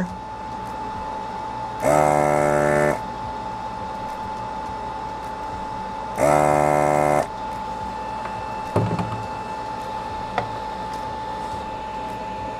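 Desoldering iron's vacuum pump running in two bursts of about a second each, about four seconds apart, sucking molten solder from the legs of an electrolytic capacitor on a circuit board. Underneath is a faint steady hum with a thin whine.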